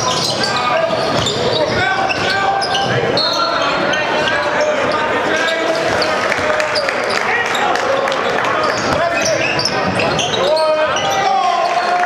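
Live game sound of a basketball being dribbled on a hardwood gym floor, with players and spectators talking and calling out throughout, echoing in the gym.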